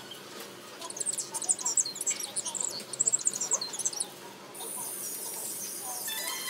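Origami paper crinkling and crackling as fingers fold and crease it, in quick irregular bursts through the first few seconds. Background music comes in near the end.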